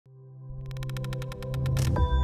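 Electronic intro music: a synth drone fades in from silence, with a fast, even pulsing pattern from about half a second in that builds to a swell near the end.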